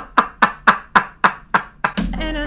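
A man laughing hard in a run of about seven short, breathy bursts, roughly three or four a second.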